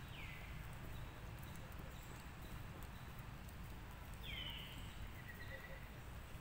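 Two short, faint bird whistles, each falling in pitch, about four seconds apart; the second is followed by a brief level note. Under them is a steady low rumble.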